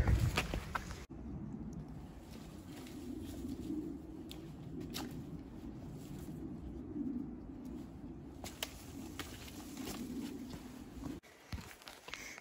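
Footsteps of hikers on a dirt forest trail: a steady low rustle with a few sharp clicks scattered through it.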